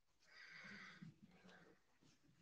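Near silence: meeting-room tone, with one faint sound lasting about a second near the start.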